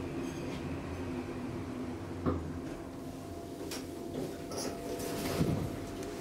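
Schindler traction elevator settling at the floor: a low hum that stops about two and a half seconds in, just after a sharp click. The car doors then slide open with a rumble that ends in a knock.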